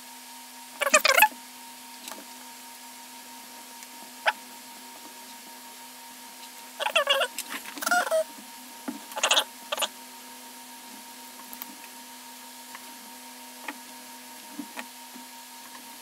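Small parts of a Fitbit Charge 3 being handled and slid back together by hand: scattered clicks and short scraping rattles about a second in, around seven to eight seconds and near ten seconds, over a faint steady hum.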